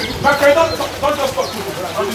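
People talking, with the words unclear.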